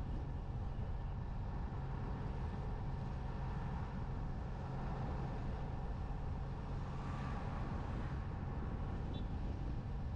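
Engine of a moving road vehicle running at a steady pace, a low even hum under road and wind noise. A brief swell of noise comes about seven seconds in.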